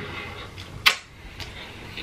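Close-miked chewing of a mouthful of food, with one sharp click a little under a second in and a few faint ticks after it.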